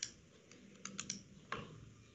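A handful of faint, sharp clicks from someone operating a computer, over a low steady hum.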